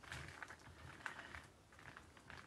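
Faint, scattered soft scrapes and taps of a palette knife working a thick mix of acrylic paint and heavy gel medium on paper.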